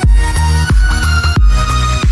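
Instrumental electronic dance music in 8D audio: a synth melody with bending notes over a deep kick drum that drops sharply in pitch, about one beat every two-thirds of a second.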